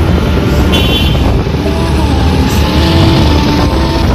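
Riding on a motorbike in city traffic: a loud, steady rumble of the bike's engine and wind on the microphone, with other traffic around. A brief high tone sounds about a second in.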